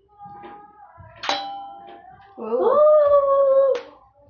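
A toy gun fires once with a sharp crack, and a short metallic ring follows from the steel tumbler. Then comes a long, loud cry from a child's voice, rising in pitch and then held, which ends with another sharp knock.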